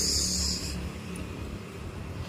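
Honda Vario 150 scooter's single-cylinder engine running at low revs, easing slightly quieter over the two seconds, with a brief hiss near the start.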